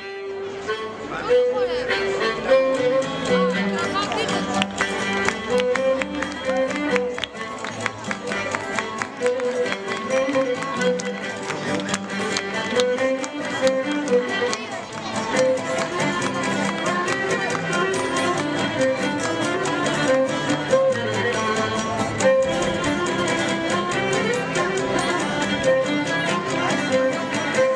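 Cretan folk dance music: a bowed string instrument carries a quick, repeating melody over a steady rhythmic accompaniment.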